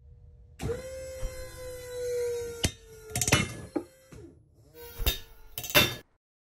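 Pulling rig loading a five-millimetre Dyneema cord soft anchor: a steady hum that sinks slightly in pitch, broken by a handful of sharp cracks as the cord and its knot take up the load.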